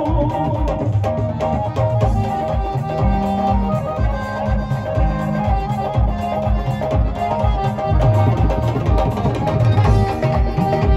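Live Punjabi folk band playing a mostly instrumental passage: a keyboard melody over tabla and a steady, regular low drum beat.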